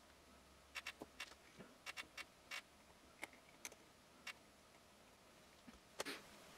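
Faint, scattered clicks and taps, a dozen or so over about three and a half seconds, from handling a salvaged laptop lithium-ion cell and clipping it onto test leads with alligator clips.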